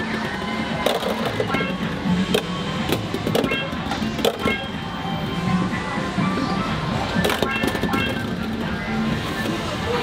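Electronic arcade-game music and bleeps, with frequent sharp clacks and knocks from balls being tossed into a carnival-style ball-toss machine.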